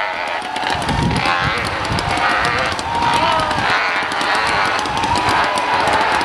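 Hillclimb motorcycle engine running at high revs while climbing a steep dirt hill, its note wavering up and down, with exhaust crackle.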